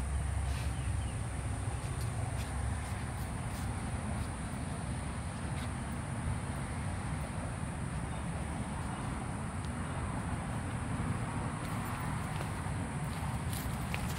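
Outdoor summer ambience: insects droning steadily at a high pitch over a low, even rumble, with a few light footsteps.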